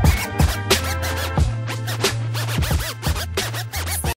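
Hip hop instrumental beat: a sustained bass line under sharp drum hits, with turntable-style scratches, bending up and down in pitch, thickening about a second and a half in.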